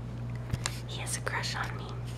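A person whispering softly for about a second, over a steady low hum.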